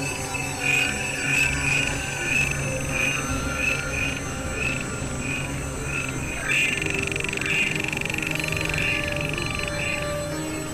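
Layered experimental electronic music: a high tone pulsing about three times a second over a low, steady drone. About six and a half seconds in, the tone is held steadily for about three seconds, then breaks off near the end.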